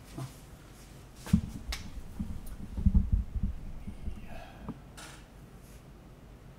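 A run of low thumps and knocks with a few sharp clicks, bunched between about one and three and a half seconds in, then a few fainter rustles.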